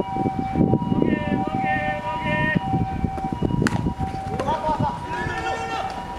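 Players shouting calls across a baseball field, with the sharp crack of a bat hitting the ball a little past halfway through. A steady high-pitched tone runs underneath.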